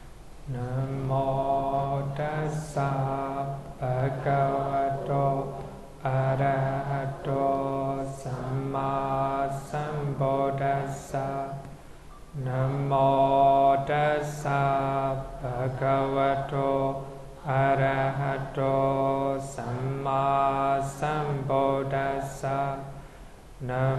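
Male voice chanting a Theravada Buddhist recitation in Pali on long held notes that step in pitch. It runs in phrases of about five seconds with short breaths between them.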